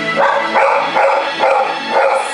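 A dog barking, a quick run of about five barks, over background music.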